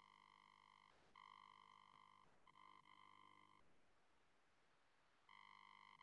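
Near silence, with only a very faint steady electronic tone that drops out for a moment near the middle.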